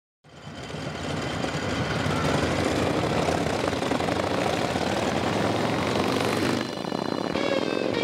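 Open-top vehicle's engine running on the road with wind rush, fading in at the start and running steadily. Near the end, guitar tones come in over it.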